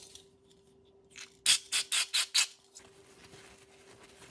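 Aerosol engine cleaner sprayed in five quick short hisses, about four a second, with a fainter hiss just before, degreasing a drill chuck.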